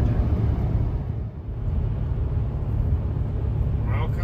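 Steady low rumble of engine and tyre noise inside a vehicle's cabin while driving at highway speed, dipping briefly about a second in.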